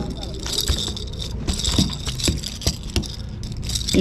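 A striped bass flopping on a wet wooden dock, its body slapping the boards in a scattered series of knocks.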